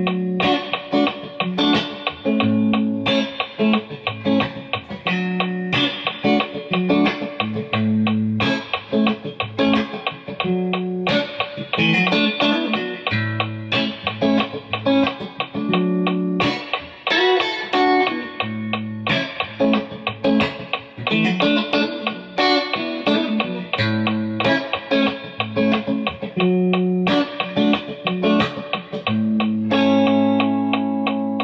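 Fender Stratocaster electric guitar playing a run of chords with sharp picked attacks and a bass note that changes about every second, in time to a Boss Dr. Beat metronome set to eighth notes. A couple of times the playing drifts off the click.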